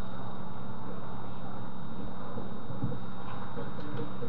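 Steady hiss with a low electrical hum from a webcam-style microphone, with no distinct event standing out.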